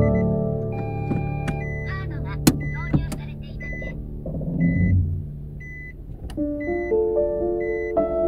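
Car engine and road rumble heard from inside the cabin of a manual car being driven, with background music over it and a few sharp clicks. The car noise fades out about six seconds in.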